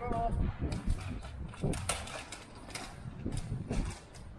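Street ambience with a brief voice at the start, then about seven irregular sharp clicks and knocks over a low, steady rumble.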